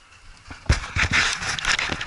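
A husky in harness jumping up at close range: a sharp thump about two-thirds of a second in, then loud, close rustling and scraping full of small clicks.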